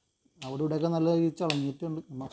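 A man talking, with a single sharp click about one and a half seconds in.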